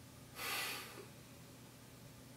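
A single short, sharp breath from a man, about half a second long, heard through a faint steady room hum.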